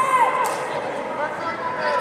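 Several voices of coaches and spectators calling out across the hall, none of them close, with a single sharp knock about half a second in.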